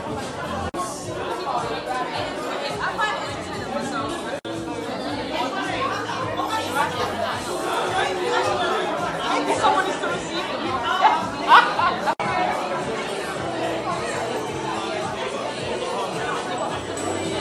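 Chatter of several people talking over one another in a large room, with music faintly underneath; the sound drops out for an instant three times.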